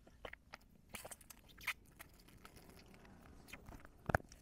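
Faint, scattered mouth clicks and sips from a woman drinking milk straight from a carton, over near silence.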